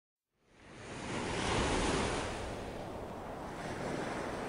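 A rushing wash of noise with no pitch or beat. It fades in from silence in the first half second, swells to its loudest around the middle, then settles to a steady level.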